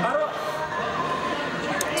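Echoing indoor sports-hall ambience: players' voices and movement on the court, a steady mix with no single loud event.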